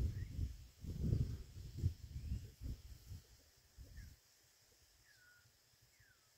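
A few faint short whistled calls of smooth-billed anis (anum-preto), spaced about a second or more apart. Low rumbling bumps from the phone being moved on the microphone fill the first few seconds and then stop.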